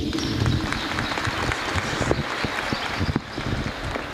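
Audience applauding, a dense patter of many claps that slowly dies down.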